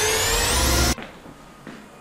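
A loud whine with many overtones climbs steadily in pitch, then cuts off abruptly about a second in, leaving quiet room tone.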